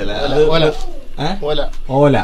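A man talking; only speech is heard.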